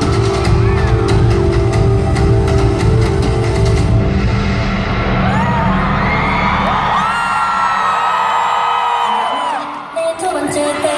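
K-pop concert music with a heavy beat over arena speakers. It cuts out about halfway through, leaving the audience screaming and cheering with high, rising shrieks.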